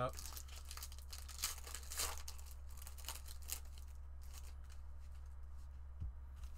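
Plastic trading-card packaging torn and crinkled by hand, in short crackly bursts over the first few seconds and quieter after, with a steady low hum underneath.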